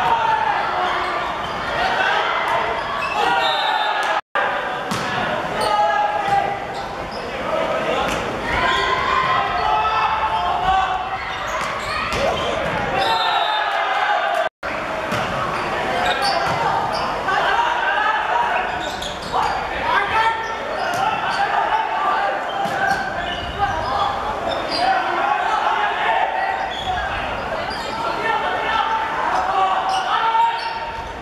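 Boys' shouting and calling during volleyball rallies in an echoing sports hall, with the thuds of the ball being struck. The sound drops out briefly twice, about four and fourteen seconds in.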